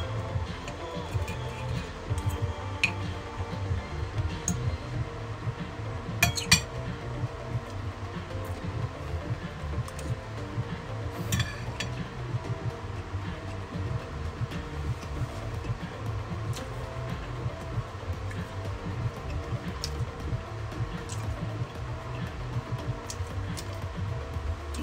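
Cutlery clinking against a plate a few times, most clearly about six seconds in and again near eleven seconds, over steady background music.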